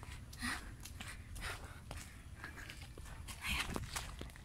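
A hiker's heavy breathing while climbing stone steps, about one breath a second, over a low rumble on the phone's microphone.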